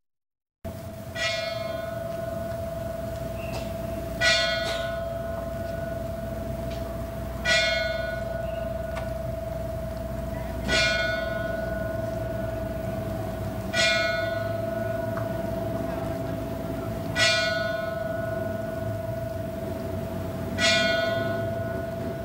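A church bell tolling slowly, one stroke about every three seconds, seven strokes in all, each ringing on into the next with a steady hum between. It is a mourning toll for a death.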